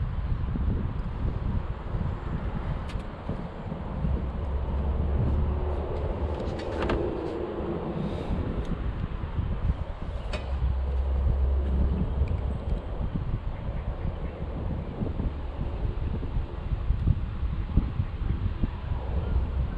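Wind buffeting an action-camera microphone on a kayak, a low rumble that swells and fades twice, with a couple of brief clicks in the middle.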